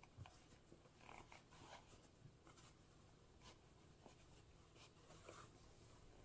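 Near silence with faint, scattered rustles and soft clicks of hands handling a wide belt over a wool-and-silk poncho.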